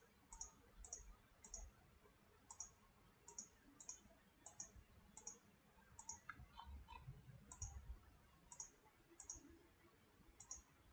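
Faint computer mouse button clicks, about fifteen of them, coming every half second to a second with some in quick pairs, as faces of a 3D model are selected one after another.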